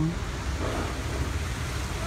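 Steady outdoor background noise: a low rumble with a faint hiss above it.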